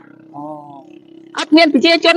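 Speech: a woman talking loudly into a handheld microphone, with a short pause and a quieter phrase before her loud speech resumes about a second and a half in.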